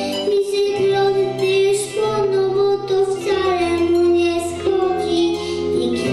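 A young girl singing into a microphone over instrumental accompaniment, holding long notes and sliding between them.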